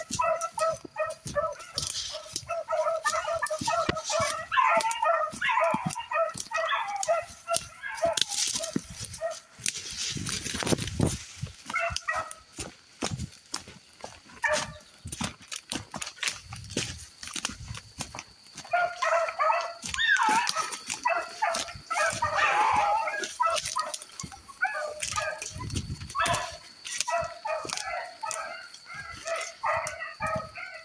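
A pack of rabbit hounds baying in a ragged chorus, the sign of dogs running a rabbit's trail, with a lull of several seconds in the middle. Footsteps and brush crackle close to the microphone throughout.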